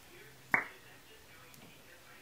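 A single sharp lip smack about half a second in, as lips pressed together over freshly applied lipstick part.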